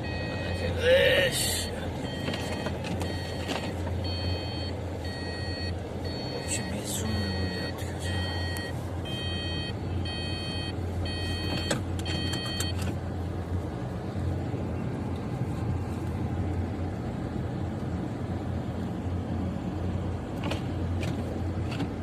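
Steady hum of a car heard from inside the cabin, with a repeating electronic beep about every 0.8 s that stops about 13 seconds in. A short rising voice sound about a second in is the loudest moment.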